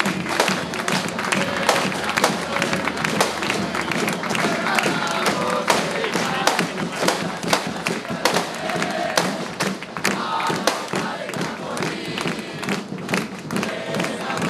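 A close crowd cheering and chanting, with clapping and many irregular thumps.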